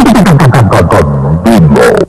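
Electronic sound effect from a sonidero's sound system: a synthesized tone sweeping steeply downward in pitch, chopped by sharp clicks, with a shorter rising-then-falling sweep near the end.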